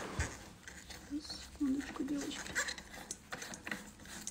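Light clicks and taps of a light bulb being screwed into the socket of a dome lamp while the shade is handled, with one firmer knock just after the start. The incandescent heating bulb is being swapped back for an ordinary lighting bulb.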